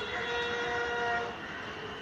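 A sharp crack right at the start, a rifle volley of the police gun salute, followed by a chord of several steady held tones lasting over a second.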